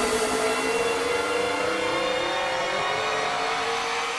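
Psytrance breakdown without drums: sustained electronic synthesizer tones layered together, one of them slowly rising in pitch.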